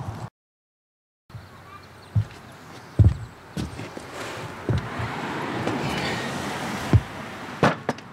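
A moment of dead silence at an edit cut, then a handful of separate knocks and clunks, as of tools and metal parts being handled on a wooden workbench, with two sharper clicks near the end. A background hiss swells and fades in the middle.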